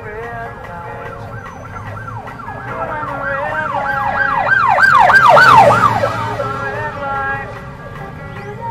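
An emergency siren over the band's backing. It goes from a slow rising-and-falling wail to a fast yelp about three cycles a second, grows louder to a peak just past the middle, then fades.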